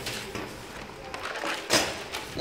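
A paper pattern being handled and slid across a wooden table, with a short rustle near the end.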